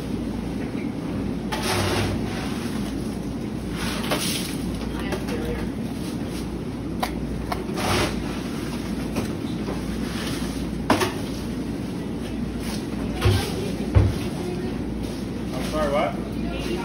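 Fillet knife cutting and scraping through fish on a cutting table: a few short scrapes and clicks, with two dull knocks near the end, over the steady background noise of the work room.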